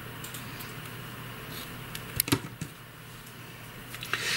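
A pair of small scissors gives a few sharp clicks a little past two seconds in, over a faint steady room hum. The clicks come as the scissors snip off a woven-in yarn end and are put down.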